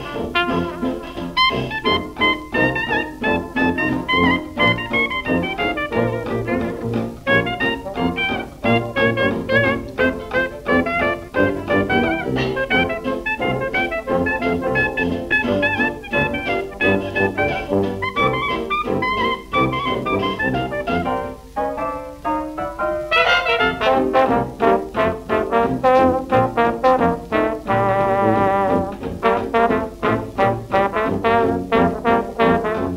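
A 1928 nine-piece hot-jazz band plays: cornet, trumpet, trombone, mellophone, clarinet/tenor sax, piano, guitar, tuba and drums. About two-thirds of the way through, one low note slides upward in pitch, and the full band then comes in louder.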